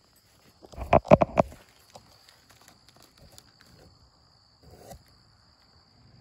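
Paper bag holding the wasp combs handled and opened: a short, loud burst of rustling and knocks about a second in, then faint scuffs, with a small rustle near the end. A steady high insect trill runs underneath throughout.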